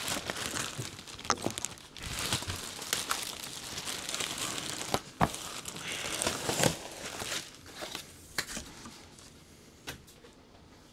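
Plastic wrapping bag crinkling and rustling as it is pulled off a boxed 3D printer, with cardboard packing inserts scraping and knocking. A sharp knock about five seconds in is the loudest moment, and the rustling thins out near the end.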